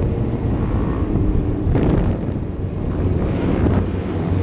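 Sport motorcycle engine running at riding speed, picked up by a helmet-mounted camera with heavy wind noise on the microphone.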